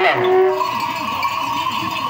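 Bells on decorated camels ringing steadily as the camels walk.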